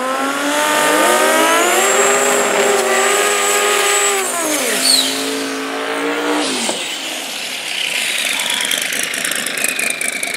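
Drag-racing car engines revving hard during burnouts, with the rear tyres spinning. The engine note climbs about a second in and holds high for a few seconds, then falls away near the middle. It holds again briefly and drops off about two-thirds through, leaving a lower, rougher engine noise.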